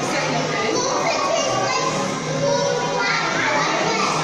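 Many young children chattering and calling out at once, their voices overlapping in a continuous din.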